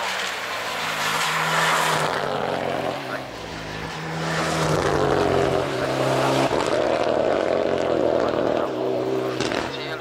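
Mitsubishi Lancer Evo X's turbocharged 2.0-litre four-cylinder engine revving hard under full acceleration, its pitch climbing and dropping back with each gear change as the car passes and pulls away uphill. It fades near the end.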